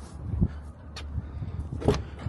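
Peterbilt truck cab door being unlatched and pulled open: a sharp click about halfway through and a louder clunk near the end, over a low steady rumble.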